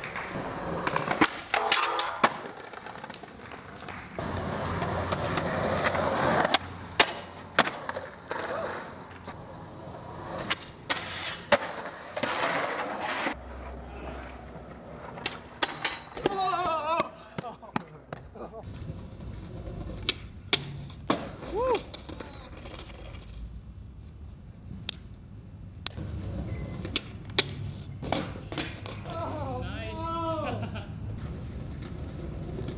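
Skateboards on concrete: wheels rolling, and many sharp slaps and clatters as boards hit the ground, stairs and rails and fly loose on bailed tricks. Short shouts of voices break in now and then.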